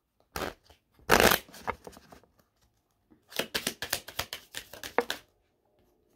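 A deck of reading cards being shuffled by hand: a couple of short bursts of flicking cards, then a longer run of rapid flicking from about three seconds in that stops about a second before the end.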